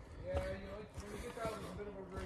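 Footsteps on a woodland path, with a faint voice talking in the distance.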